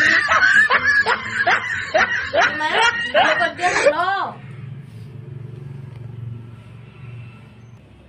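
A woman laughing in a quick run of short ha-ha pulses for about four seconds, the last ones rising in pitch. Then a faint low hum.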